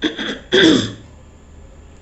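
A woman coughing to clear her throat: two short bursts within the first second, the second the louder.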